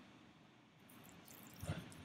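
Faint rubbing of a damp sponge wiping red iron oxide wash off a textured clay piece, with a brief low sound near the end.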